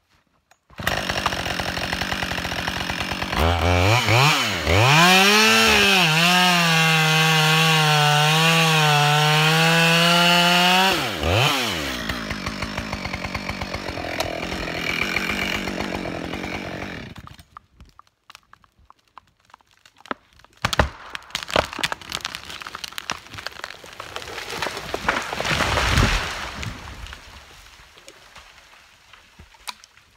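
Chainsaw running, revving up under load for about seven seconds as it cuts the trigger wood holding up a back-cut tree, then dropping back to idle before it fades out. Several seconds later the released tree cracks and falls, landing with a heavy thud near the end.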